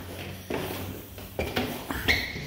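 A hand sliding along a painted wooden stair handrail, with two brief rubbing sounds, about half a second in and about a second and a half in.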